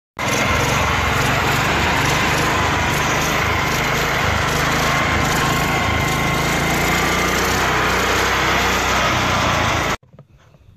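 Small single-cylinder air-cooled engine running flat out at a steady high speed, loud and continuous, with no governor to hold its speed down.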